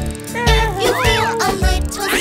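Children's nursery-rhyme song: upbeat backing music with a steady beat under a high sung voice whose notes arch up and down.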